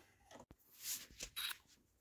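Faint handling noise: a soft rustle about a second in, then a few light clicks.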